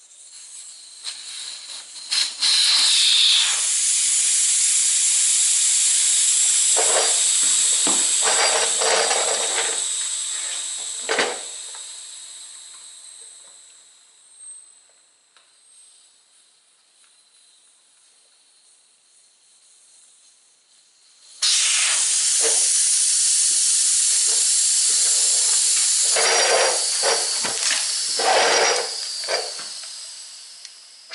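Air hissing out of a Craftsman tractor tire through its valve stem with the valve core removed. The hiss starts abruptly, is loud at first, then fades over about ten seconds as the tire goes flat. After a quiet pause, a second tire's valve core comes out about two-thirds of the way through and hisses out the same way, with a few handling knocks and rubs.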